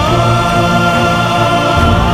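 Dramatic background score: a long held high note that slides up at the start and then holds steady, over sustained lower tones and a low bass that swells and fades.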